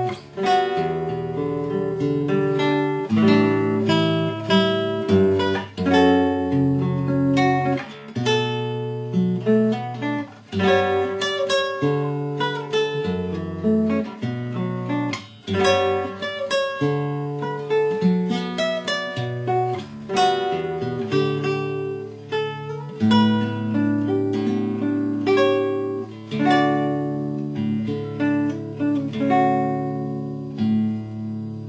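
Solo nylon-string classical guitar played fingerstyle: a slow melody of plucked notes over sustained bass notes, in phrases with short breaths between them.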